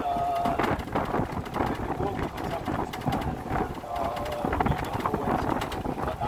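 Open golf cart rolling along a paved path: a steady rumble of tyres on paving stones, with many small rattles and clicks from the cart body.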